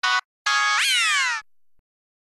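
Synthesized organ tones from the Organito 2 VST plugin: a short note, then a held note that slides upward in pitch about halfway through and cuts off.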